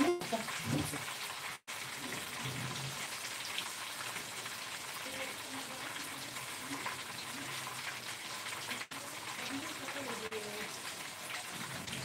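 Breaded cutlets frying in hot oil in a pan: a steady sizzle with small crackles and pops.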